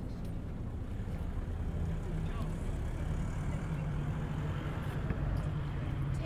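Street traffic: a steady low engine rumble from road vehicles, with faint voices of passers-by.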